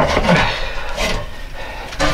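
Irregular rubbing and scraping on a wooden ladder and brick wall as someone climbs down inside a narrow brick well shaft, with the hollow ring of the shaft.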